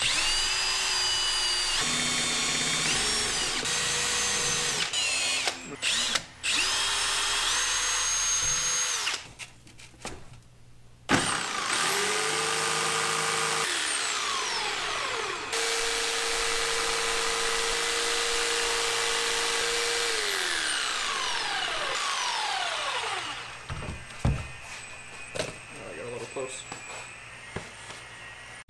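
A cordless drill with a step bit boring holes in three short runs, its pitch shifting as the bit cuts. Then a corded jigsaw cuts in two longer steady runs, each winding down with a falling pitch, followed by lighter handling noises.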